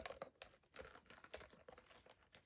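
Faint, scattered light clicks and rustles of small items being taken out of a small handbag.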